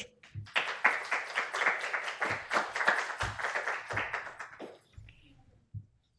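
Audience applauding, starting about half a second in and dying away near the end, with a few low thumps as it fades.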